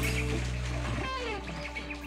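A live worship band's held chords slowly dying away between songs, with a short falling glide in pitch about a second in.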